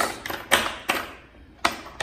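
A few sharp clicks and taps of small metal bolts being turned and loosened by hand in a carbon fibre foil-mount track plate, the loudest about half a second in and near the end.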